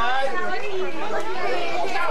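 Several people talking at once, their voices overlapping in chatter.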